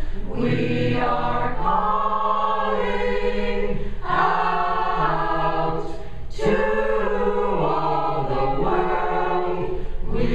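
Mixed choir of men and women singing in sustained chords, with short breaks between phrases about four and six seconds in.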